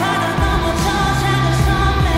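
K-pop song with a male singer's vocals over sustained synth and bass notes, played back with heavy reverb so it sounds as if heard in an empty arena.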